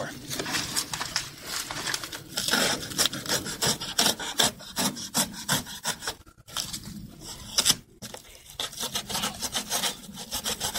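A knife sawing through corrugated cardboard in quick, rasping back-and-forth strokes, breaking off briefly about six and eight seconds in.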